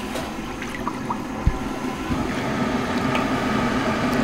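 Wooden paddle stirring a sugar-and-water slurry in a copper candy kettle, the liquid sloshing and swishing steadily over a low, even hum. A dull thump comes about one and a half seconds in.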